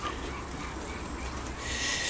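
Steady low rumble of city street background, with a short hiss near the end.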